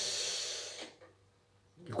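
A man's breathy, hissing exhale lasting just under a second and fading out, followed by about a second of near silence.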